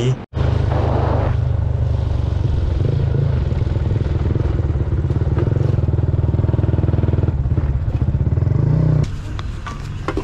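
Motorcycle engine running while being ridden, heard from the bike itself as a steady low drone mixed with road and wind noise. About nine seconds in, the engine sound drops to a much lower level.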